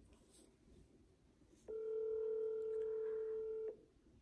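Telephone ringback tone through the phone's speaker: a single steady two-second ring beginning a little before halfway, the sign that the outgoing call is ringing at the other end.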